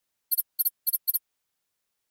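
A short electronic sound effect: four quick, high-pitched double blips in under a second, with silence around them.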